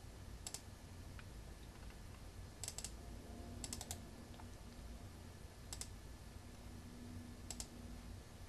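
A handful of faint, sharp clicks from a laptop's pointer buttons, spread out over several seconds, some coming in quick pairs or threes as a file is right-clicked and selected.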